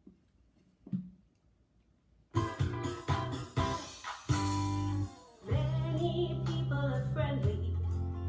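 About two seconds of near silence, then a recorded children's song starts playing through a loudspeaker in a small room: band music with a steady bass line.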